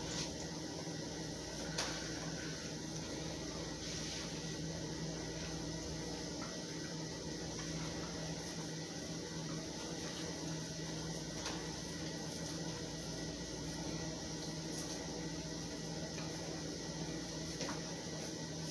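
A steady low mechanical hum with a few faint clicks, about two seconds in and again near four and eleven seconds.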